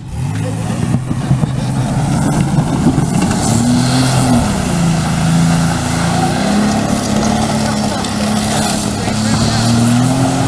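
Minivan engine revving hard as the van is driven in tight circles on dirt, its pitch rising and falling several times with the throttle. The van is being driven hard to spin the tyres off their rims.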